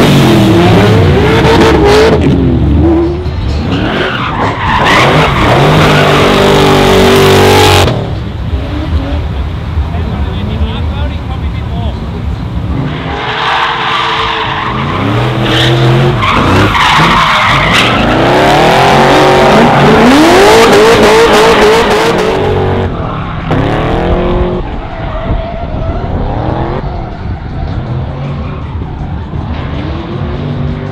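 A Holden VE SS's V8 engine revving hard and repeatedly while the car drifts, its pitch climbing and falling with each throttle stab, over the hiss and squeal of rear tyres spinning and skidding on the track. The sound changes abruptly about eight seconds in, where one pass cuts to another.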